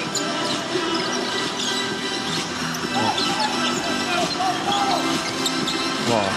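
Music playing in a basketball arena during live play, with a ball being dribbled on the court.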